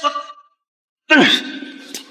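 A short vocal cry about a second in, falling steeply in pitch and trailing off into a breathy exhale. Before it, the tail of a shout and a moment of dead silence.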